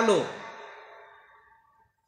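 A man's speaking voice ends a word, then trails off into a fading tail that dies away to a near-silent pause.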